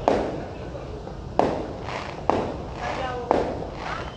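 Four sharp explosive bangs, roughly a second apart, each trailing off in an echo.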